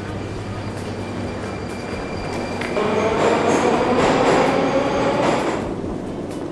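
A Moscow Metro train running past in the station, its rumble swelling about three seconds in with steady high whining tones over it, then fading near the end, over the steady noise of the station hall.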